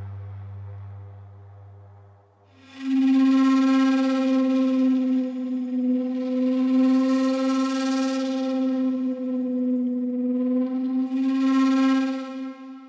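Sampled shakuhachi from the LORES library playing a 'bend waves (flutter)' articulation. A low drone dies away in the first two seconds. Then, from just under three seconds in, one long held note begins, its pitch wavering slightly, with three swells of breathy flutter.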